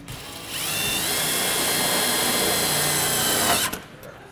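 A cordless drill running. It spins up about half a second in, holds a steady high whine for about three seconds, then stops.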